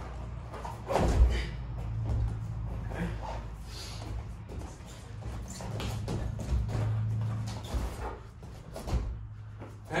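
Wrestlers' feet and bodies thudding and shuffling on foam wrestling mats during snap-and-shot drilling. There are irregular dull thumps, the loudest about a second in, over a steady low hum.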